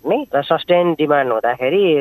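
A man talking in Nepali, continuous speech with a narrow, band-limited sound like a radio or phone line.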